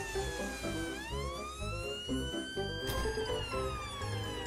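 Ambulance siren wailing in slow sweeps: falling in pitch, rising for about two seconds, then falling again. It plays over background music.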